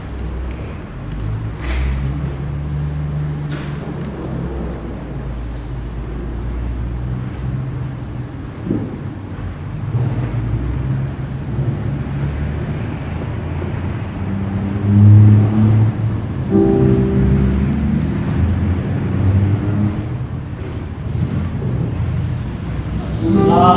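Digital keyboard playing a slow solo passage of low, sustained chords, growing louder about two-thirds of the way through.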